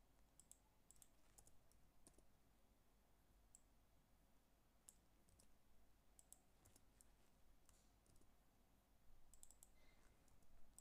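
Very faint, scattered clicks of a computer mouse and keyboard while lines of code are selected, copied and pasted, with a quick run of key presses near the end.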